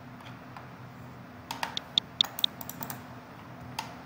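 Computer keyboard and mouse clicking: a few single clicks, then a quick burst of about eight clicks between about one and a half and three seconds in, and one more near the end, over a low steady hum.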